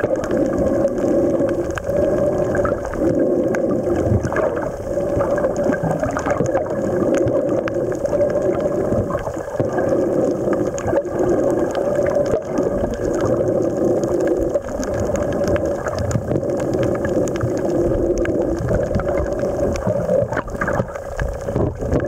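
Underwater sound picked up by a camera below the surface: a steady droning hum with a fluctuating rumble beneath it and scattered faint clicks.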